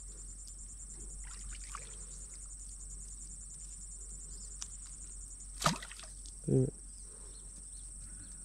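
Steady, high-pitched insect chorus, finely pulsed, with one brief sharp sound about five and a half seconds in.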